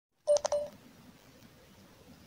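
A short electronic beep in two quick pulses about a quarter-second in, followed by faint room tone.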